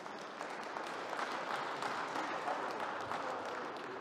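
An audience applauding: a steady, dense patter of many hands clapping.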